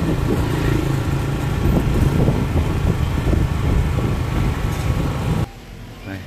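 A small motorbike engine running steadily, with road and wind noise, on a street. It cuts off suddenly about five and a half seconds in.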